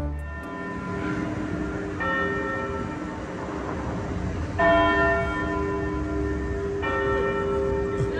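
Clock-tower bell of Toronto's Old City Hall tolling, four strokes about two seconds apart, each ringing on into the next; the third stroke is the loudest. A steady hum of city traffic runs underneath.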